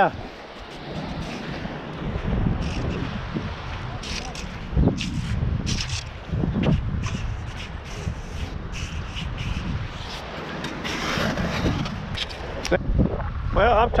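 Wind rumbling on the microphone, with a scatter of short, sharp clicks and scuffs from about four seconds in.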